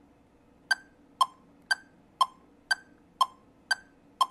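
Metronome at 60 subdivided into eighth notes, clicking twice a second in an alternating higher and lower "tick-tock". The tick marks the quarter-note beat and the tock the eighth note between. The clicks start a little under a second in.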